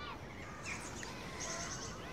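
Quiet outdoor ambience with faint birdsong: a few scattered chirps and a short, high repeated trill near the end, over a low steady background hum.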